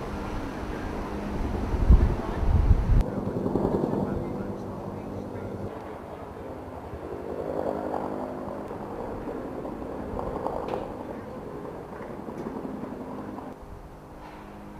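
A steady engine drone, with wind gusting on the microphone for the first three seconds.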